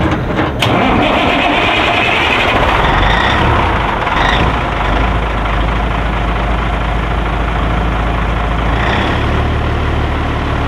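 Caterpillar diesel engine of a 1984 Peterbilt 362 cabover starting and catching about half a second in. It then settles into a steady low idle as it begins warming up.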